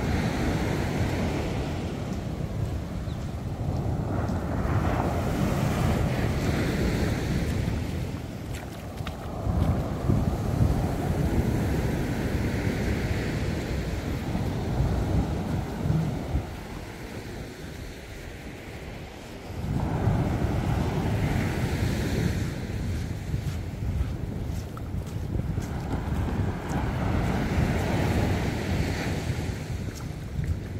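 Small waves breaking and washing up a sandy beach in repeated surges, with wind buffeting the microphone. The surf eases into a quieter lull a little past the middle, then swells again.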